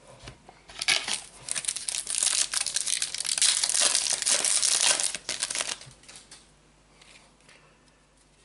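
Panini Adrenalyn XL trading-card booster pack's plastic wrapper being torn open and crinkled by hand, a dense crackle that starts about a second in and dies away about two seconds before the end, leaving only faint handling.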